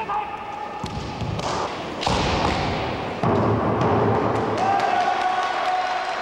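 Kendo fencers shouting kiai, long held cries, the last one lasting over a second, over sharp knocks of bamboo shinai strikes and stamping feet on a wooden floor.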